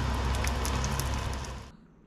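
Oil sizzling and crackling steadily around breaded, cheese-stuffed pieces shallow-frying in a frying pan. It cuts off abruptly near the end.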